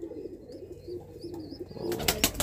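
Domestic pigeon cooing low and continuously, with faint high chirps from small birds in the background and a brief rustle near the end.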